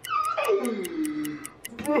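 A man's long, howl-like vocal cry that slides steadily down in pitch over about a second, then breaks into a laugh near the end.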